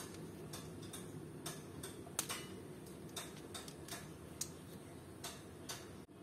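Faint, irregular clicks and ticks of small plastic toy parts being folded and pushed into place by hand, as a Core Class Transformers Bumblebee figure is converted into its vehicle mode. Over a dozen separate clicks, unevenly spaced.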